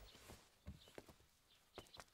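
Faint, unevenly spaced footsteps: a few soft knocks in near silence as someone walks away.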